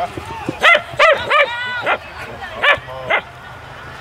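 A dog barking in short, sharp, high yaps, about five of them, with one longer drawn-out call among the first few.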